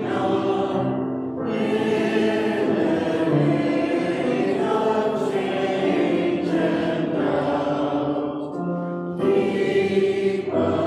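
Church choir singing a slow hymn, accompanied on grand piano, in long held phrases with a brief breath about a second in and another near the end.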